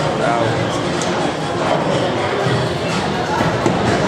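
Busy hall ambience: indistinct voices talking over background music, at a steady level.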